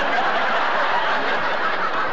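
A group of people laughing together, a steady wash of many voices with no one voice standing out.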